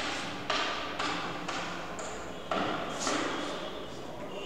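Chalk writing on a blackboard: a run of scratchy strokes, each starting with a sharp tap, about two a second.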